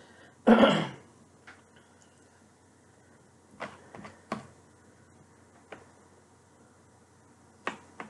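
A person clearing their throat once, about half a second in, followed by a handful of light, scattered clicks of a fork against a plastic TV-dinner tray while eating.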